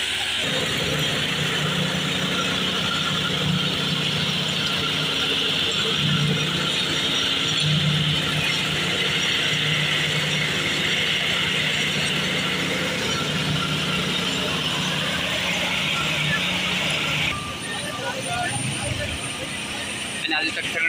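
Asphalt paver's engine running steadily under a strong, even hiss. Both cut off abruptly near the end and the sound drops to a quieter engine background.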